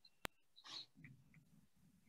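Near silence, broken by a single sharp computer-mouse click about a quarter second in, followed by faint soft sounds.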